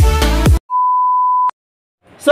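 Electronic dance music with a beat cuts off about half a second in. An edited-in electronic beep follows: one steady, single-pitch tone just under a second long that stops with a click.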